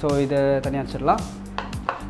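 A man's voice, a drawn-out sound and then a short one, over steady background music, with a few sharp clicks.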